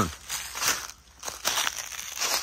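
Footsteps crunching through dry fallen leaves, a few irregular steps with a short lull about a second in.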